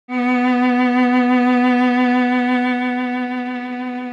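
A single sustained note bowed on a string instrument, played with an even vibrato that swings above and below the pitch. The note starts just after the beginning and fades slightly toward the end.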